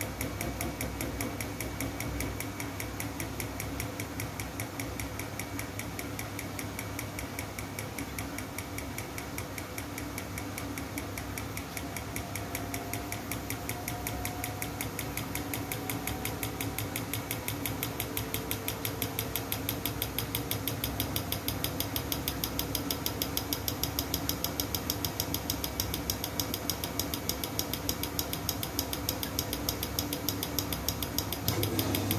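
Siemens front-loading washing machine running its wool wash, the drum turning with a rapid, even clicking over a low motor hum; it grows a little louder in the second half.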